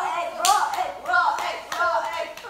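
A run of hand claps at a lively rhythm, mixed with girls' voices.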